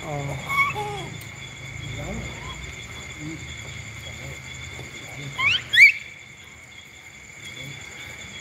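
Steady, high, continuous chirring of night insects over a low hum. About five and a half seconds in, a quick run of high rising squeaks is the loudest sound.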